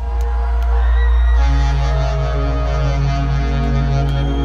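Live rock band playing a loud, sustained passage of held keyboard tones over a deep bass drone, with no drum hits in it.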